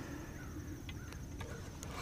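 Quiet outdoor lake ambience: a steady low rumble with a few faint clicks late on and a faint bird call early on.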